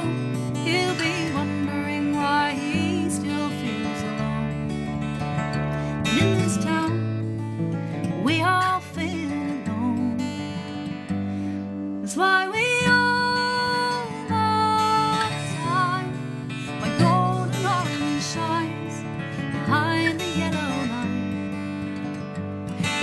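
Cutaway acoustic guitar strummed in a slow folk song, with a woman's voice singing long held notes over it in places.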